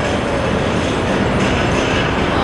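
Loud, steady rumbling roar of a passing heavy vehicle.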